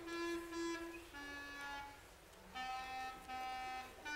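A student wind instrument playing a slow melody of long held notes, one at a time, stepping downward in pitch with a short break about halfway through.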